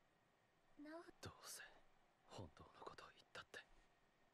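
Faint, soft-spoken voice close to a whisper, saying a few short phrases starting about a second in: quiet dialogue from the anime.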